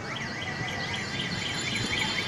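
A warbling electronic alarm, its high pitch sweeping up and down about four times a second, over steady street noise.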